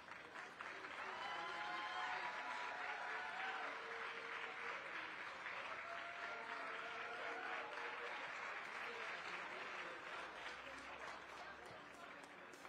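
Audience applauding, building about a second in and easing off near the end, with a voice faintly heard over it.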